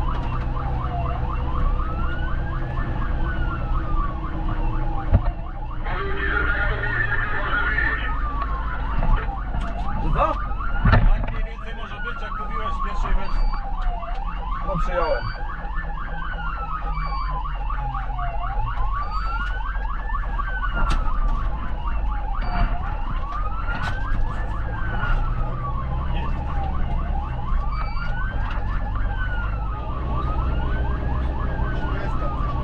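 Fire engine's wail siren rising and falling about every four seconds, heard from inside the cab over the truck's engine running. A brief burst of hiss about six seconds in and a few sharp knocks around the tenth second.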